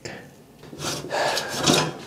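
Scraping and rubbing as a plastic case fan is worked against the steel chassis of a computer case in a tight trial fit, starting just under a second in.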